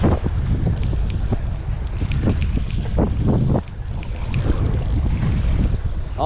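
Wind buffeting the microphone over surf washing and splashing against jetty rocks.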